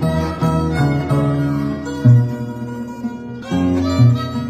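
A violin and an Andean harp playing a folk tune together: the bowed violin carries the melody while the harp plucks chords and deep bass notes, the loudest of them about two seconds in and again shortly before the end.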